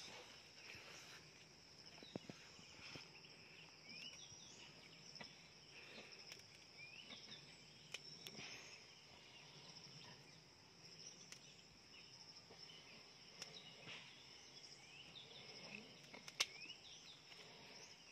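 Faint, steady chirring of insects such as crickets, with scattered short bird chirps. A few sharp clicks stand out, the loudest about sixteen seconds in.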